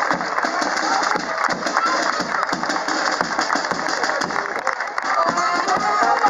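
A band playing march music, mixed with crowd voices and scattered clapping from onlookers.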